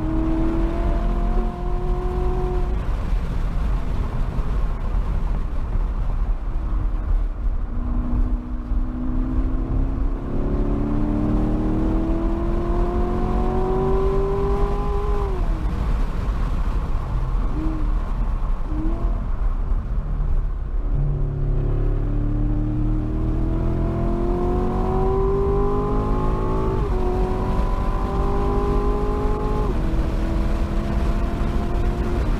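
A performance car's engine heard from inside the cabin, pulling hard with its pitch climbing through the revs and dropping sharply at each upshift, three times. Between the pulls the engine note falls away, with two short blips of revs, over a constant low road and tyre rumble.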